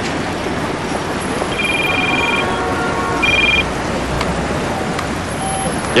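Steady city street traffic noise, with two short two-tone electronic beeps about a second and a half and three seconds in.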